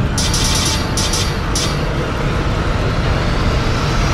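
Cinematic logo-intro music and sound design: a deep sustained rumble under bursts of bright shimmering sparkle in the first two seconds, and a rising sweep near the end.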